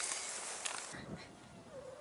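Faint rustling steps, then near the end a short, faint animal call on one pitch.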